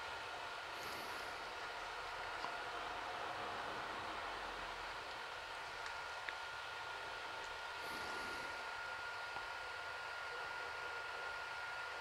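Quiet room tone: a steady low hiss with a thin, faint high whine running through it.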